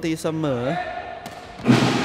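Sepak takraw ball kicked on the serve and met by the receiving side: a faint knock about a second and a quarter in, then a loud sudden impact near the end that hangs on as a noisy smear.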